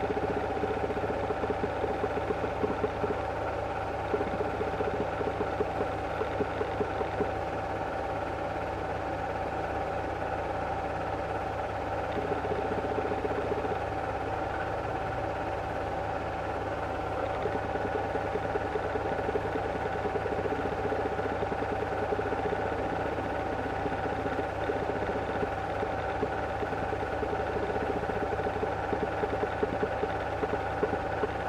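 8mm cine projector running, a steady mechanical whirr and hum with a fine, rapid clatter from the film transport.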